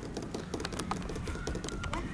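A run of irregular light clicks and taps over a low steady rumble.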